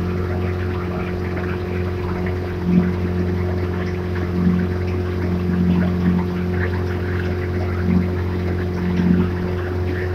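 Outboard motor of a small launch running at a steady cruising speed, a constant low hum with a few brief swells, over the wash of water along the hull.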